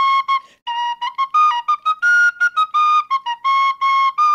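Penny whistle playing a solo tune of short, separately tongued notes, with a brief break about half a second in.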